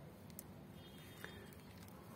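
Near silence: faint background noise with two soft ticks, about half a second in and again past a second.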